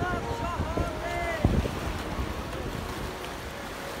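Wind buffeting the microphone with a rush of surf behind it. Voices are heard briefly in the first second and a half, with a single bump on the microphone partway through.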